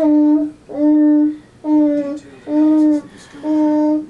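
Didgeridoo blown by a small child in five short separate toots, about one a second, each a steady note that starts a touch lower and settles.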